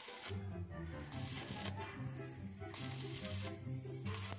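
Background music with a stepping bass line, over the crackle of a stick welder's arc on steel tubing, which comes and goes in stretches of about a second.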